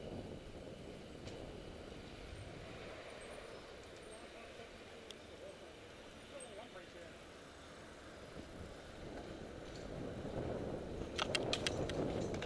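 Bicycle riding heard from a camera on the moving bike: steady rushing road and wind noise, with faint voices and a quick run of sharp clicks near the end.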